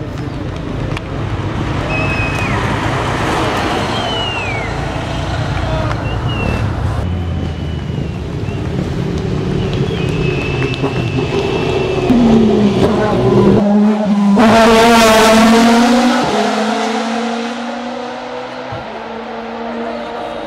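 Racing touring cars at full throttle up a hill-climb road, engines at high revs. The loudest car goes by about two-thirds of the way through, its engine note dropping in pitch as it passes, then fading away.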